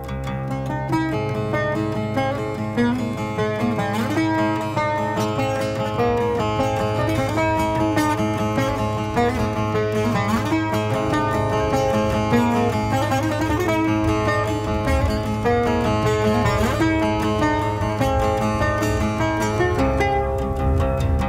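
Cretan laouto played solo with a long plectrum: a continuous melody of quick picked notes over a steady low bass tone, with a few brief sliding notes.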